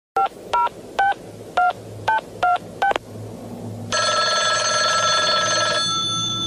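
Touch-tone telephone keypad dialing: seven short beeps over about three seconds, each one a pair of tones. About four seconds in, a steady electronic tone of several held pitches takes over.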